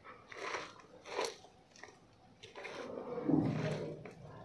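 Crisp chopped lettuce, cucumber and spring onion crunching and rustling as a gloved hand tosses the salad on a plate: two short bursts, then a longer, louder stretch near the end.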